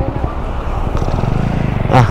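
Motorcycle engine idling with a steady low throb, swelling briefly near the end.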